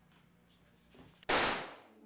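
A single gunshot about a second and a quarter in, sudden and loud, its tail fading over about half a second. A faint click comes just before it.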